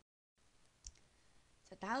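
A brief drop to dead silence at the start, like an edit cut, then a single sharp click just under a second in, followed by a fainter one. A voice begins near the end.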